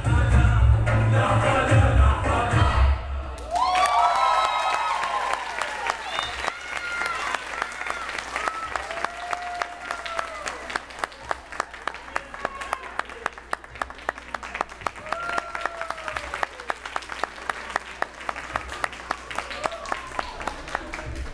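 Dabke music with a heavy beat stops abruptly about three seconds in. An audience then cheers with high whoops and applauds.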